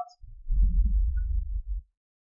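A low, muffled rumble lasting about a second and a half, cutting off shortly before the end.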